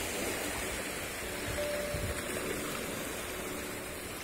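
Small waves washing onto a sandy shore at the water's edge, a steady even rush of calm surf.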